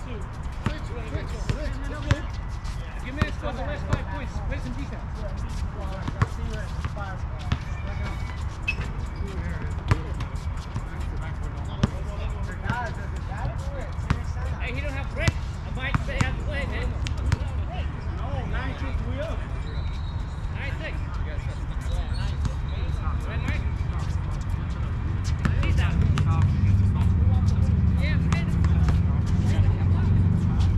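Basketball bouncing on an outdoor hard court: sharp thuds at irregular intervals, over distant players' voices and a low rumble that grows louder near the end.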